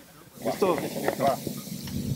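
Speech starts about half a second in, over a steady hiss that comes in with it. Before that there are only faint, distant voices.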